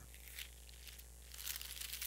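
Sheets of paper rustling faintly as they are handled and picked up from a lectern, with small crinkles that come more often in the second half.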